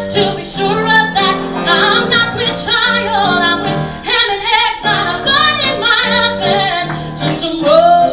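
A woman singing a comic cabaret song live into a microphone, with wavering held notes, backed by a small band of piano, drums and cello.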